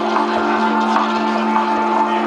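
Live band music: a sustained chord held steady, with faint light ticks over it.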